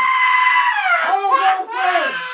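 A person screaming loudly: one long, high held shriek that falls in pitch about a second in, followed by shorter cries.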